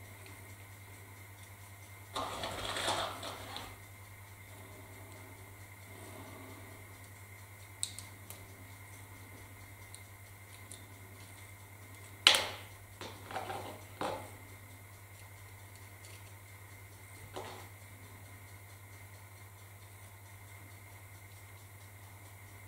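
Small handling noises at a workbench: a rustle about two seconds in, then a few light clicks and taps of small parts being handled, the sharpest about twelve seconds in, over a steady low hum.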